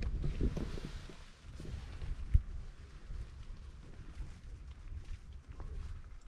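Wind rumbling on the microphone and the tent, with a light hiss in the first second or so, and a single sharp tap of camera handling about two and a half seconds in.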